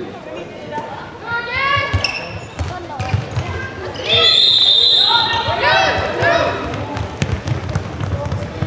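A referee's whistle gives one steady blast of about a second, roughly four seconds in, during a handball match. Around it, voices call out in the hall and a handball bounces repeatedly on the court floor.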